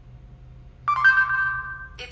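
Electronic chime from a Moto G's speaker about a second in, a higher note joining the first and ringing for about a second as it fades: the Google voice search tone marking that the spoken query has been taken.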